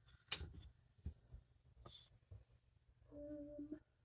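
Wooden stitching stand being turned and adjusted: one sharp click shortly after the start, then a few faint ticks and knocks. Near the end, a short steady hum of under a second.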